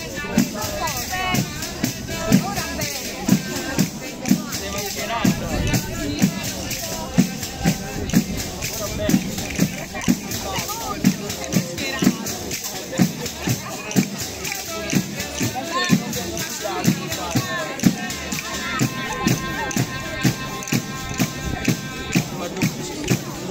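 Tammurriata folk music: a tammorra frame drum beats a steady rhythm with jingles, a voice sings over it, and castanets clack.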